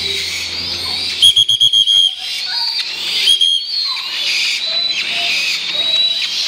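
Several young black-winged kite chicks calling to be fed: thin, high whistling calls throughout, with a loud rapid string of about seven piping notes a little over a second in and another piping note in the middle.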